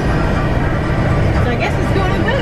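Steady road and drive rumble inside a motorhome's cab at highway speed, the rig coasting at about 45 mph with no throttle and no brakes.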